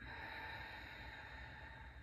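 A woman's long, slow exhale, a soft breathy rush that fades gradually near the end: the paced out-breath of a calming breathing exercise.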